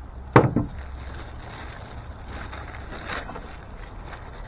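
One sharp knock as the knife's cardboard box is handled, a moment in, then faint crinkling of the clear plastic bag around the knife as it comes out of the box.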